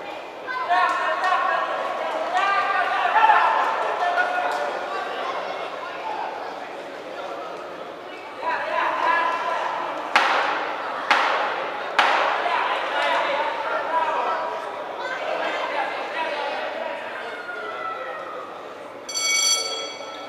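Voices shouting across a large echoing sports hall during an amateur boxing bout. Three sharp knocks about a second apart come midway, typical of the timekeeper's ten-second warning. A short bell rings near the end, marking the end of the round.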